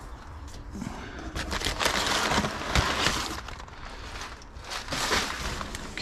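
Crumpled brown kraft packing paper rustling and crinkling as hands dig through a cardboard box. The crackling builds after about a second, is loudest in the middle and flares again near the end.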